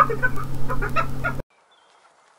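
Hyena laughing: a rapid run of high-pitched, pulsed cackling calls over a steady low hum, cutting off suddenly about a second and a half in.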